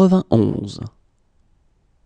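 Speech only: a single voice says the French number "quatre-vingt-onze" (91) during the first second, then near silence.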